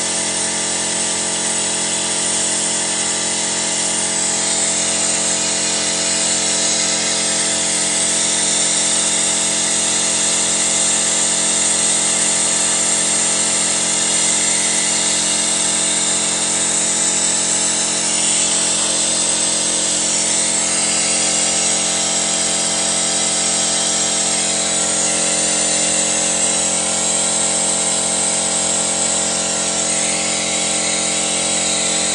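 Datsun Go's three-cylinder petrol engine running steadily during a carbon-cleaner decarbonising treatment, drawing cleaner in through a hose into the intake, with a steady whine and hiss.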